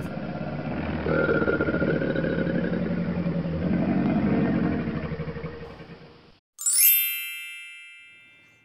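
A low, rough rumbling sound effect lasts about six seconds and fades out. Near the end a bright chime is struck once and rings, slowly dying away.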